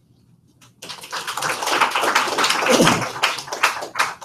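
Audience applauding, starting about a second in after a moment of near silence.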